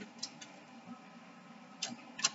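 A deck of tarot cards being shuffled by hand: a few faint, irregular clicks of the cards slapping together, two close together at the start and one near the end, over quiet room tone.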